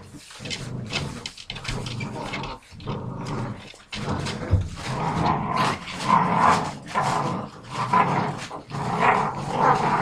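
A litter of puppies growling as they bite and tug at a rag. The growls get louder and come more often from about halfway through.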